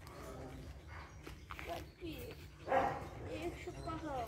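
Dogs barking and yipping in short calls, the loudest a bark a little under three seconds in, with voices murmuring faintly behind.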